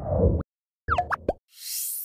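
Animated logo sound effects from a news channel's subscribe end card. A low swoosh comes first, then a few quick rising bubbly pops about a second in, then a high sparkling shimmer near the end as dots appear.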